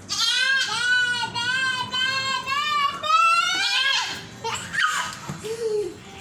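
Goat bleating: a long, quavering bleat of about four seconds, breaking a couple of times, followed by a few shorter, softer sounds.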